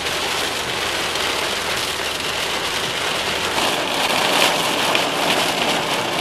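Heavy rain hitting a car's windshield and roof, heard from inside the cabin, getting heavier about three and a half seconds in.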